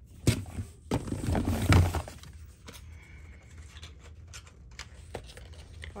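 Hands rummaging among plastic cosmetic bottles and tubes in a cardboard shipping box. A sharp knock comes near the start, then a louder rustling, scraping burst from about one to two seconds in, then scattered light clicks.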